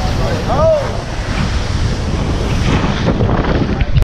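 Wind buffeting the microphone of a camera on a TP52 racing yacht sailing fast, over the rush and spray of water along the hull.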